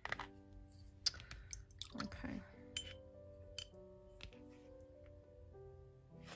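Soft background music with held notes. Several light clicks and clinks of a pipette and brush against paint jars and the palette sound over it, with a short murmured hum of a voice about two seconds in.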